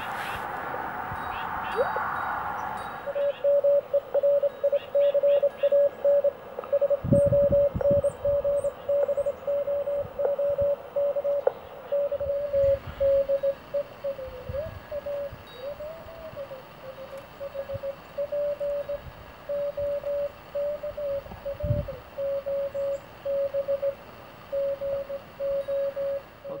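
Portable ham radio transceiver sounding Morse code (CW): a single mid-pitched tone keyed on and off in dots and dashes over receiver hiss. The tone's pitch wavers briefly near the middle, and a couple of low bumps come from handling the rig.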